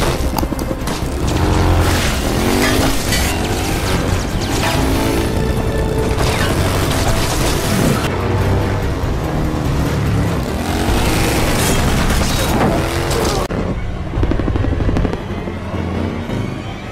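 Film soundtrack of a motorcycle engine revving, its pitch rising and falling several times, mixed with music and scattered impacts.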